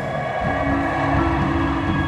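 Indoor percussion ensemble music: about half a second in, a low held chord enters as a steady drone over a low rumble and is sustained.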